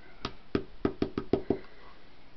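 Quick knocks of fingers and a cardboard jigsaw piece on a wooden tabletop while pieces are fitted into the puzzle: seven short taps in about a second and a half, unevenly spaced.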